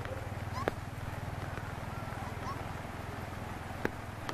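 Faint short rising animal chirps, several of them, over a steady low hum, with a sharp click about a second in and another near the end.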